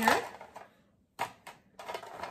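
Wooden craft sticks clicking against each other and the container as they are put in: a few short clacks from about a second in.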